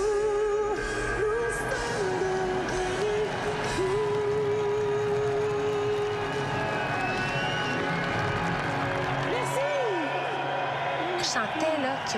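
Live rock-pop band performance: a woman's singing voice holding long notes over drums and electric guitar. The drums drop out about ten seconds in.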